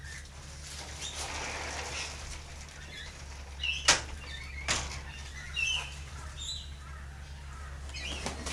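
Faint, short, high bird chirps, with a soft rustle in the first few seconds and two sharp clicks a little under a second apart midway.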